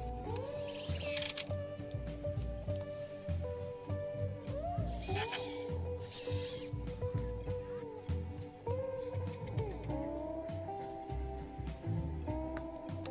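A cordless drill driving screws into pallet-wood slats in three runs, the motor whine rising as it spins up, holding, then falling as it stops, over background music.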